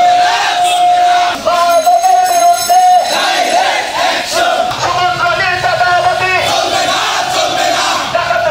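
A crowd of men shouting protest slogans together, loud, with one long held shout at the start followed by shorter chanted phrases.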